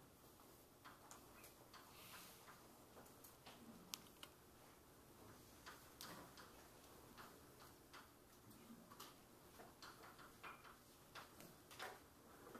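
Chalk on a blackboard as equations are written: faint, irregular taps and short scratches, with a sharper click about four seconds in.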